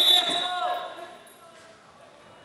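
Referee's whistle: one short, high blast as the period runs out, with a brief shout just after it. The gym then falls to low room noise.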